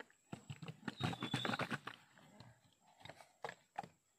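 Plastic container being handled and tilted, giving a cluster of soft knocks and rattles in the first two seconds, a brief high tone about a second in, and a few single knocks later.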